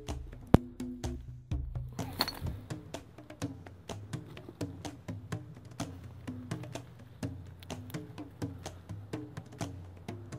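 Background music with a steady beat of short, wood-block-like percussive strokes over bass and melody notes. One sharp click stands out about half a second in.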